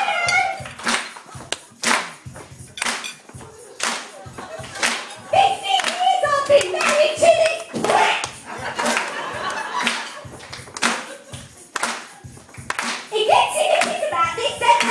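An audience clapping in time, about one clap a second, over backing music, with a voice breaking in over it now and then.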